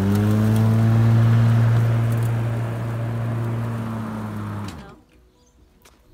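Greenworks 19-inch cordless electric lawn mower's motor and blade running at full speed with a steady hum, then cutting out about five seconds in, the pitch dropping briefly as it stops.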